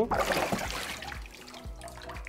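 Water sloshing and splashing in a plastic tub as a wooden cutting board is pushed under and moved about, loudest in the first second and then dying away. The board is being wetted to raise its grain before oiling.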